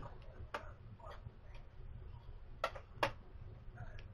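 Sharp clicks of a BNC video connector being pushed onto the DVR's video input and twisted to lock, with a few small clicks and the two loudest close together about two and a half seconds in.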